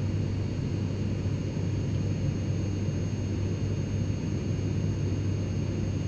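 Steady drone of jet airliner engines: an even low rumble with a few faint steady high whining tones above it.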